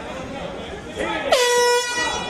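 One short air horn blast, about half a second long, a little past the middle, its pitch dropping slightly as it sounds and then holding steady. Voices shouting in the first half.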